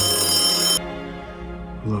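Telephone bell ringing, a bright metallic ring that cuts off suddenly just under a second in. Background music plays beneath it.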